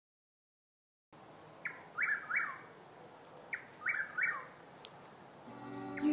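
A bird calling over a faint hiss, after a second of silence: two bursts of three quick chirps, each note sliding downward. Music fades in near the end.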